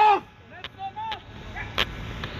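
Outdoor shouting: a loud shouted word cuts off at the start, then short, fainter shouted voices, and a single sharp crack near the end.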